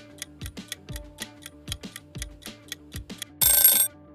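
Background music with a steady, ticking beat. About three and a half seconds in, a loud, half-second ringing alarm sound effect marks the countdown timer running out.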